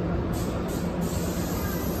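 An electric commuter train moving slowly alongside the platform, a steady low running hum with a high hiss coming in a moment after the start.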